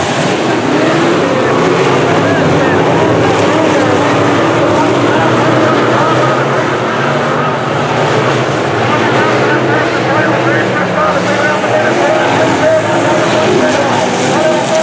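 A pack of dirt-track sport modified race cars racing on the oval, several engines running at once, their pitches rising and falling and overlapping as the cars go through the turns and pass by.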